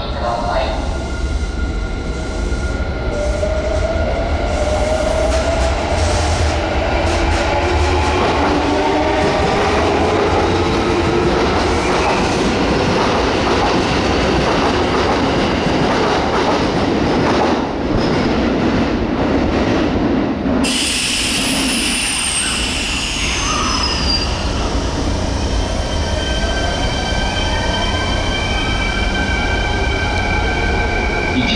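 Kintetsu 5820-series electric train pulling away, its inverter motor whine rising in pitch over the rumble of the wheels. After a cut about 20 seconds in, a second train comes in, its whining tones falling as it brakes.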